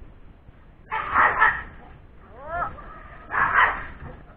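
Golden retriever puppies fighting: two loud growling barks a little over two seconds apart, with a short yelp rising and falling in pitch between them.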